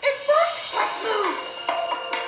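Cartoon soundtrack played through computer speakers: short wordless vocal sounds from a character or creature, their pitch bending up and down, with music coming in near the end.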